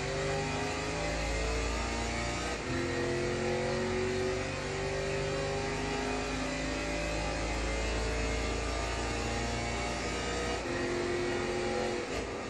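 Mercedes C63 AMG's 6.2-litre V8, heard from inside the cabin under hard acceleration. Its note climbs slowly through each gear, with an upshift about two and a half seconds in and another near the end.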